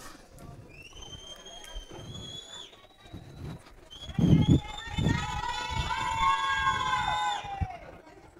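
A high, rising whistle, then several voices holding one long sustained note together, with low thuds under the start of the note. The note cuts off sharply near the end.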